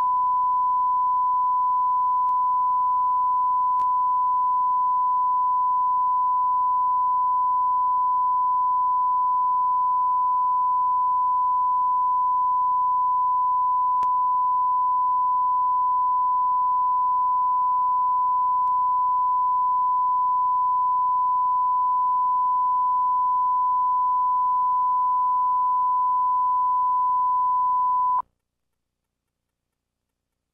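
Steady 1 kHz line-up reference tone recorded with the colour bars at the head of a videotape master. It holds one unchanging pitch and cuts off suddenly near the end.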